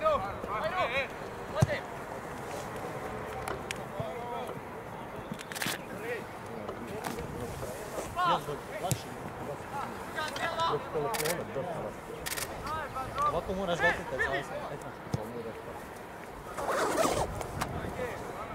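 Voices calling and shouting across an outdoor football pitch during play, with a few sharp knocks of the ball being kicked, the loudest about a second and a half in.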